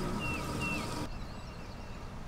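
A bird calling outdoors with short, falling whistles, two in quick succession in the first second, over steady outdoor background noise that drops abruptly about a second in.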